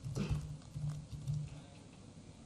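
Typing on a laptop keyboard: a run of short, dull key taps with a few sharper clicks, irregular and a couple a second.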